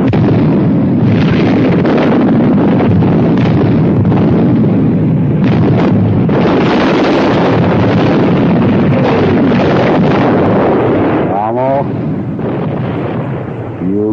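Artillery barrage on a war-film soundtrack: gun after gun firing, with explosions blending into one continuous loud noise.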